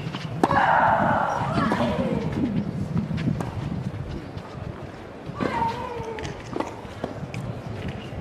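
Tennis rally on a clay court: racket strings striking the ball every second or two, with a player's long, falling shriek on a stroke just after the start and again about five and a half seconds in.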